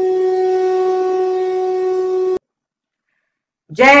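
A single long horn note held at a steady pitch, cut off suddenly about two and a half seconds in. After a moment of silence, a man's voice calls out "Jai" loudly near the end, with echo.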